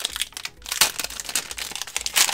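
Wrapper of a 2015-16 Donruss basketball trading card pack crinkling as it is handled and opened, in quick irregular crackles with a few louder ones.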